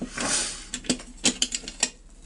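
Chainsaw muffler being fitted by hand against the engine's cylinder: a scraping rub, then several sharp, uneven clicks of metal on metal and plastic as it seats.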